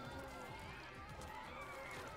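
Faint, low-level anime soundtrack: quiet wavering voices over background music.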